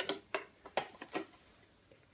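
Light metallic clicks of a tin vacuum attachment being handled and fitted onto the metal body of a vintage Hoover vacuum cleaner: about four clicks roughly evenly spaced in the first second or so, then quiet.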